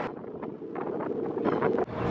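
Wind rumbling on the camera microphone over outdoor harbourside ambience, with a few faint short clicks. The sound cuts abruptly near the end.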